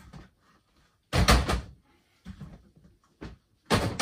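Plastic storage crates being shifted and knocked against each other, in sudden clatters. The loudest comes about a second in, and another loud one starts near the end.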